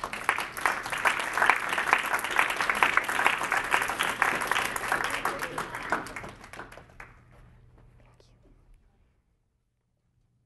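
Audience applauding: dense clapping that dies away about seven seconds in, fading to quiet.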